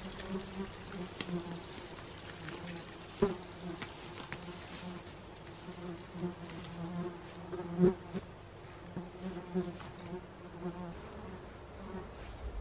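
Horseflies buzzing in a low, steady drone that swells and fades as they fly about. Two sharp knocks come about three and eight seconds in, the second the loudest.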